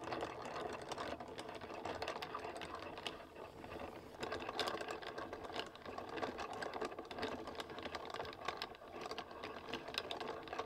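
Plastic hand-cranked yarn ball winder spinning, its gears running with a steady rapid clatter as yarn winds onto the spindle. A short lull comes about four seconds in.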